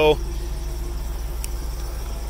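Ram Power Wagon's 6.4-litre HEMI V8 idling: a steady, even low rumble, with a faint click about a second and a half in.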